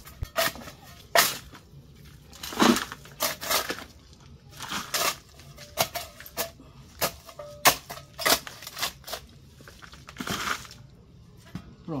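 A small metal garden trowel digging into loose soil: about a dozen separate, irregular scrapes and crunches as it scoops and tosses earth.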